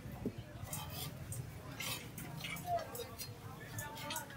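Background chatter of a busy market crowd, with several sharp clicks and taps of utensils.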